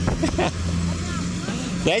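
An engine running steadily in the background, a low even hum, with a cough right at the end.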